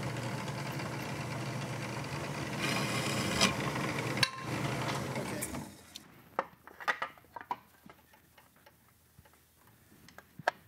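Milling machine running steadily with a low hum, then going quiet about five and a half seconds in. After it, a short run of light metallic taps and clicks as a hand-made aluminium side cover is fitted against the motorcycle's frame.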